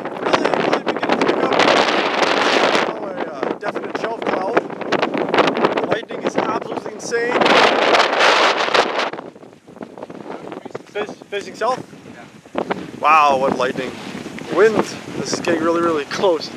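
Strong wind gusting across the microphone in loud bursts, easing about halfway through; a voice comes in near the end.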